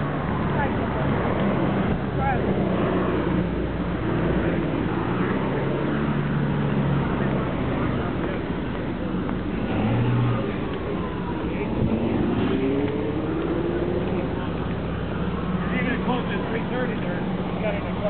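Street ambience: cars running and passing, with indistinct voices of people talking.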